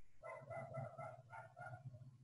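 A faint run of about six short animal calls in quick succession, each with a clear pitch.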